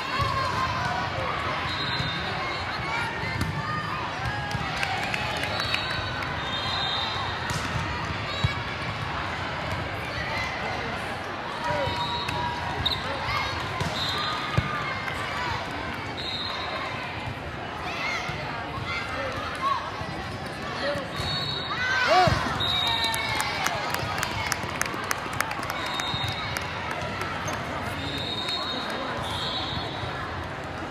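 Indoor volleyball rally on a sport court in a large hall: shoes squeaking in short chirps, a few sharp ball hits, and a steady background of players' and spectators' voices.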